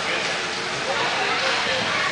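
Indistinct voices of children and coaches in an ice rink over a steady background hiss, with no close voice.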